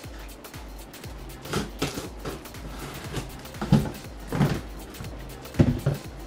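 Cardboard shipping box being opened and a shoe box pulled out: several short knocks and scrapes of cardboard, the loudest near the end, over steady background music.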